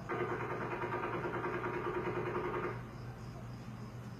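Distant rapid gunfire: one continuous burst of about three seconds that stops abruptly, over a steady low hum.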